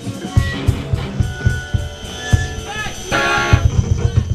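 Live rock band playing: electric guitar with drum-kit hits in a steady beat.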